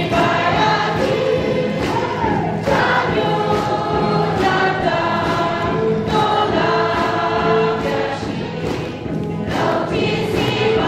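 A congregation and worship team singing a gospel song together in chorus, with a steady beat under the voices.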